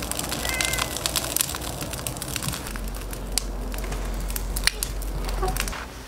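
Thick, starch-thickened sauce being poured over a braised pork hock on a plate, heard as a steady fine crackling with many small scattered clicks.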